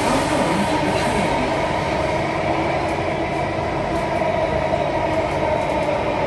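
Alstom Metropolis C830 metro train running, heard from inside the car: a steady, even running and rolling noise with no breaks.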